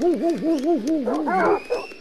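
Dog-howling sound effect cued as a celebration: a pitched howl wavering up and down about four or five times a second. A second dog joins about a second in, with a thin rising whine near the end.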